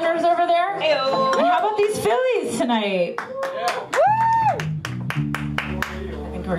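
A woman's voice through the PA sings and calls in sliding notes, ending in a high held whoop about four seconds in, while the audience claps. Low sustained guitar and bass notes ring from the amplifiers near the end.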